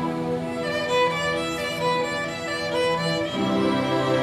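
Youth string orchestra playing, a solo violin carrying a moving melody over held notes in the lower strings.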